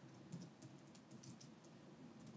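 Faint computer keyboard typing: quick, uneven keystrokes, about four a second, as a password is keyed in.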